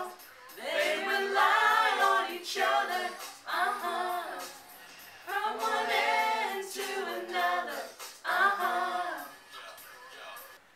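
A small group of male and female voices singing together unaccompanied, in about four phrases with short breaks between them.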